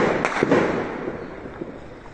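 Three sharp bangs in quick succession in the first half second, their echo dying away over the next second or so.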